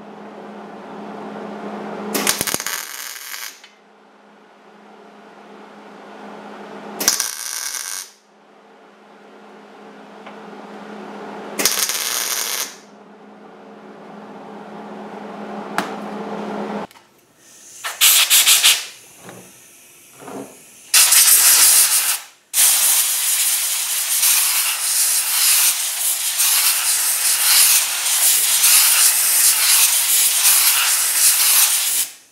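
MIG welder laying three short tack welds on sheet steel, each about a second of crackling arc, over a steady low hum. Later a compressed-air blow gun gives a couple of short blasts, then hisses steadily as it blows off the welds.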